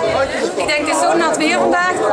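A woman talking close to the microphone over the chatter of a crowd in a large hall.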